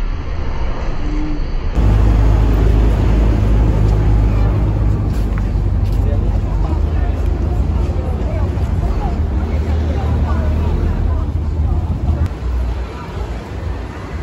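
Steady low rumble of vehicle traffic with people's voices talking over it. The sound changes abruptly about two seconds in, where one recording cuts to another.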